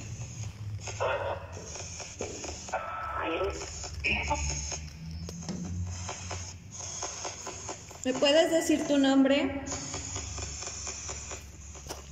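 Indistinct, muffled voices murmuring, too unclear to make out words, loudest from about eight seconds in, over a low steady hum.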